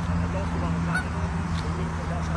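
Geese honking with short scattered calls over a steady low drone.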